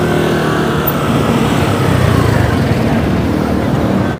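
Street traffic with motorbike engines passing: a steady low engine hum, with a faint whine that slowly falls in pitch as a vehicle goes by.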